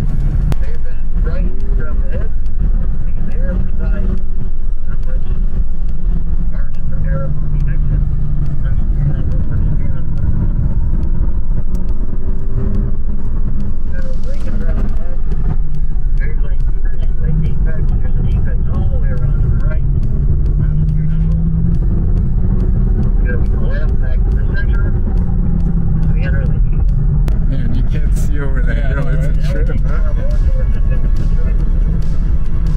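A BMW M car's engine and road noise heard from inside the cabin while it is driven at pace on a race track, the engine note rising and falling.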